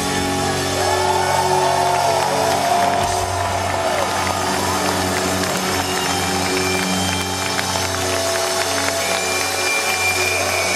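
Live rock band playing in an arena, heard from the audience: electric guitar and drums with sustained chords, played loud and steady.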